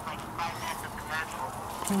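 Waterfowl calling in the background: a few short calls about half a second and a second in. A man's voice starts right at the end.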